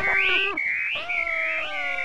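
Electronic swooping tones that slide in pitch: three quick rising swoops, each followed by a tone that falls slowly away.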